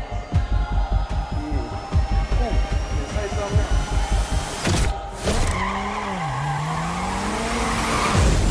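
A rap track with a heavy beat that gives way, about five seconds in, to a sudden rush of noise and then a car engine revving, its pitch dipping and then climbing steadily: movie-style car-chase sound effects in a music video.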